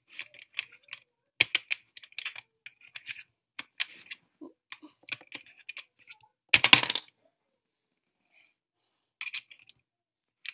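Coins being pushed one after another into the slot of a plastic soccer-ball coin bank with an automatic counter: a run of small sharp clicks, one louder clattering drop a little past halfway, then a short quiet before a few more clicks near the end.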